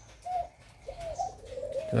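Caged doves cooing softly: a few short coos, then a longer drawn-out coo near the end.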